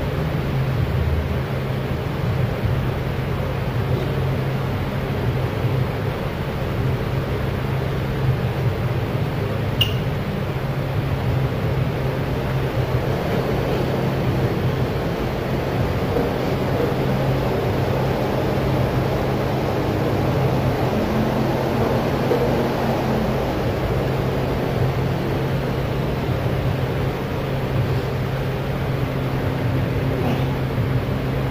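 Steady low hum with an even hiss, as from a ventilation system, with one sharp click about ten seconds in.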